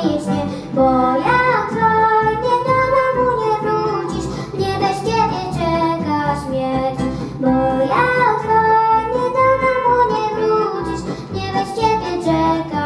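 Children singing a Polish patriotic song into microphones, a sustained melodic line over instrumental accompaniment.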